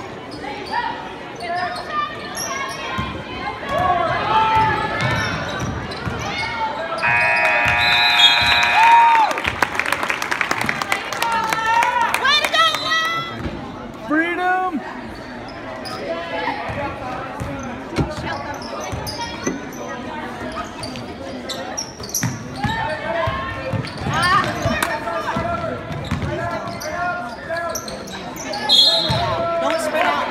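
Basketball game on a hardwood gym floor: the ball bouncing, sneakers squeaking and indistinct shouts from players and spectators. A steady blare lasting about two seconds comes about eight seconds in and is the loudest sound, and a referee's whistle sounds near the end.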